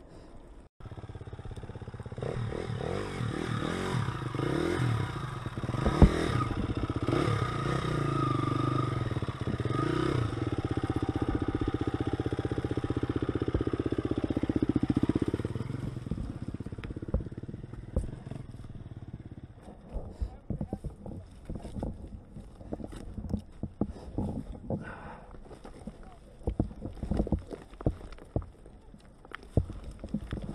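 Off-road dirt bike engine running and revving for about fifteen seconds as the bikes pick through loose rock. The engine then drops back, and stones crunch and clatter irregularly under the tyres.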